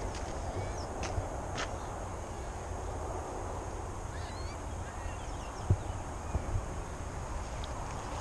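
Steady outdoor background noise with faint bird calls and a few light knocks.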